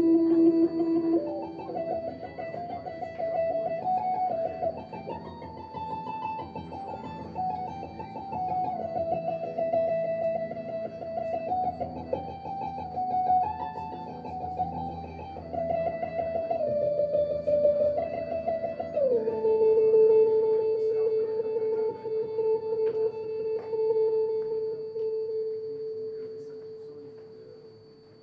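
Electric guitar played upright, in an improvised experimental style: sustained notes stepping from pitch to pitch, then one long held note that drops to a lower pitch about two-thirds of the way through and fades out near the end.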